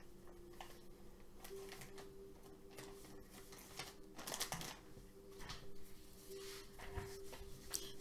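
Faint rustling and light tapping as a baby wipe is pulled from its pack and things on a craft table are handled, with a busier patch of rustling about halfway through. A faint steady hum sits underneath.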